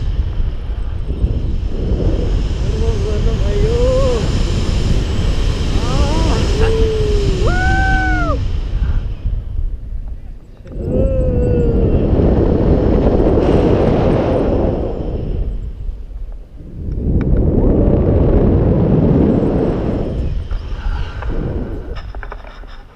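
Wind buffeting an action camera's microphone in tandem paragliding flight. It is loud and comes in surges that swell and drop away twice in the second half. A few rising-and-falling voice whoops come about four to eight seconds in.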